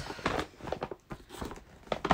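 Paper gift bag rustling and crinkling as it is handled, in a run of irregular crackles.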